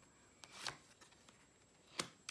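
A tarot card being drawn off the deck and laid on the table: a faint papery swish about half a second in, and a light tap near the end.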